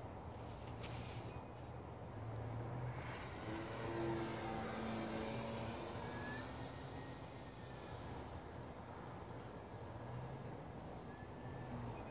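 A small propeller airplane's engine droning as it flies low past. It grows louder about three seconds in, is loudest around four to six seconds, then fades.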